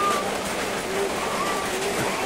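Rain falling on a corrugated tin roof, a steady hiss, with a few faint low calls over it.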